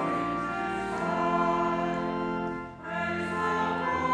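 A group of voices singing a hymn with organ accompaniment, in long held notes, with a brief breath between phrases about three seconds in.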